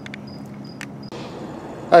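Crickets chirping in short, evenly spaced high-pitched pulses, about three a second, with a couple of faint clicks. About a second in the chirping stops and a steady hiss takes over.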